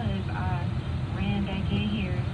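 Steady low road and engine rumble inside a moving car's cabin, with a talking voice over it.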